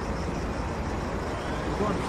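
Steady low rumble of vehicle and street noise, with a voice starting faintly near the end.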